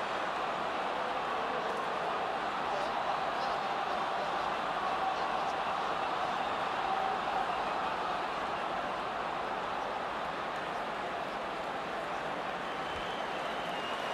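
Steady background noise of a large stadium crowd, an even wash of many distant voices with no single sound standing out.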